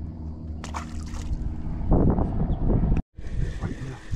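Water sloshing and gurgling against a small boat's hull over a steady low hum, getting louder and splashier about two seconds in. The sound drops out completely for a moment just after three seconds.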